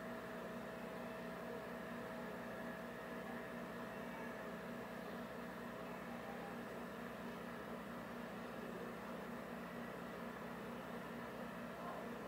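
Steady room tone: a constant low hum and hiss with a faint, unbroken high tone, unchanging throughout.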